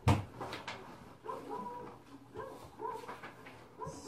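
A dog barking repeatedly in short calls, heard faintly from outside, with a sharp knock right at the start.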